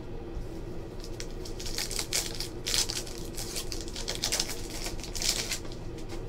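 Trading-card pack wrapper crinkling and tearing open in several short rustling bursts as a pack of cards is unwrapped and handled, over a steady low hum.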